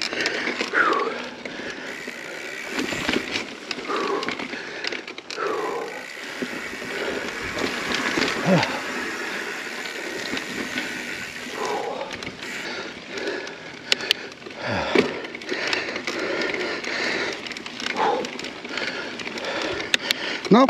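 Mountain bike rolling fast over a dirt trail: steady tyre noise with the rattle and clatter of the bike over bumps, and the rider's heavy breathing and short gasps every few seconds from exhaustion.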